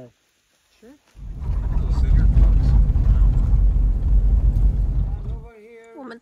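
A loud, low rumbling noise that starts about a second in and cuts off abruptly shortly before the end.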